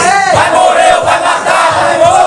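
A crowd of people shouting and chanting together, many loud voices overlapping.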